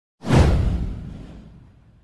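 An intro swoosh sound effect with a deep low boom under it. It hits suddenly a fraction of a second in, sweeps down in pitch and fades out over about a second and a half.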